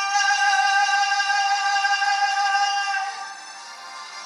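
A man singing one long, steady held note, which ends about three seconds in. Heard through a computer's speaker, it sounds thin and has no bass.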